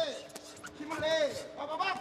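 A man's voice in short calls, over a faint steady tone.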